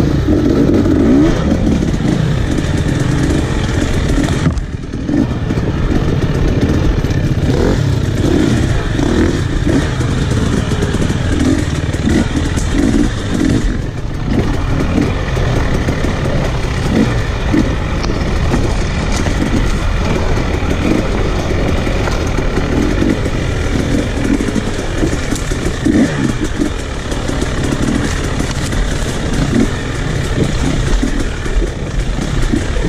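Enduro dirt bike engine under way on a rough trail, revving up and easing off again and again, with a brief drop about four and a half seconds in.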